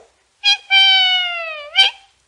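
A man's voice imitating a piglet's squeal: a short yelp, then one long high squeal that sags slowly in pitch and flicks up at the end.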